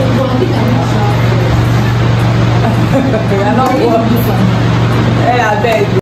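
Indistinct talking between people at a table, over a steady low hum.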